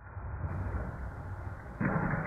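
Toy monster truck rolling down an orange plastic track with a steady low rumble, growing louder near the end as it reaches the bottom of the ramp.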